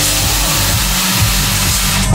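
Electronic dance music at a drop, with a loud, even rushing hiss laid over its steady bass line.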